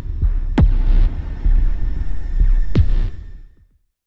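Logo-intro sound effects: a deep, throbbing electronic rumble with two sharp hits that drop quickly in pitch, one under a second in and one near three seconds, then a fade out to silence just before the end.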